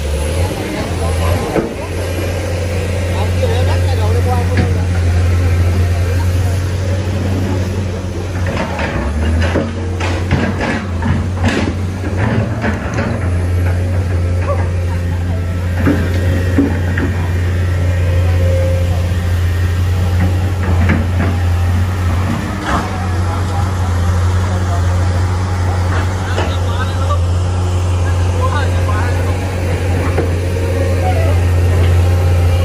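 Indistinct voices over a steady low rumble, with a cluster of sharp clicks about ten seconds in.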